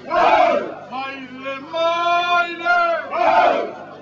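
A group of voices chanting in unison: long held notes broken by loud shouted calls, one just after the start and another about three seconds in.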